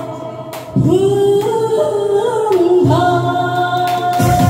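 A woman singing into a handheld microphone over accompanying music, holding one long note for about two seconds before singing on.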